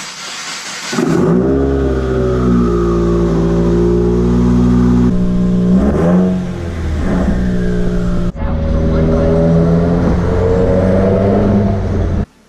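Subaru WRX's turbocharged flat-four engine: a brief crank and start, then idling, with a couple of revs about six seconds in. After a sudden cut it runs under acceleration, its pitch rising near the end.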